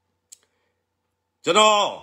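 A man speaking in Burmese, starting about one and a half seconds in after a pause broken by a single short, faint click.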